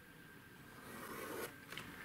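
Faint scraping of drafting tools on paper: a plastic set square sliding on the sheet and a fine pen drawing a line along its edge, swelling a little for about a second, with a few light taps near the end.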